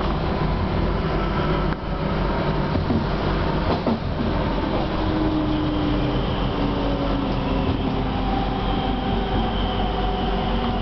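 Class 323 electric multiple unit heard from inside the carriage while running: a steady rumble of wheels on rail with faint whining tones from the traction equipment that drift slowly downward in pitch in the second half.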